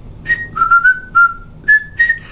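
Person whistling through puckered lips: four or five short, clear notes that step up and down in pitch.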